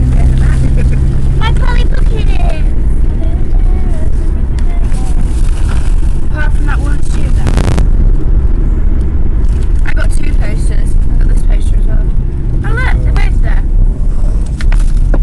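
Road and engine noise inside a moving car's cabin: a loud, steady low rumble, with voices at moments and a short burst of noise about halfway through.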